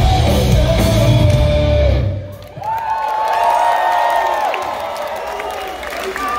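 A live rock band with electric guitars and drums plays loudly with heavy bass, and the song ends abruptly about two seconds in. The crowd then cheers and whoops.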